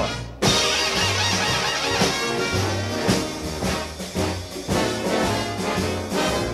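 Swing-style band music led by brass over a steady beat and a moving bass line: the instrumental introduction of a song.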